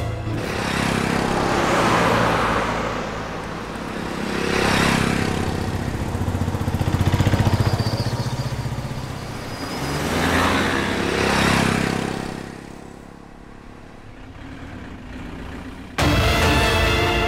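Cars and a small truck driving along a road: steady engine hum with several swells of engine and tyre noise as vehicles go by, the loudest about halfway through, then quieter near the end.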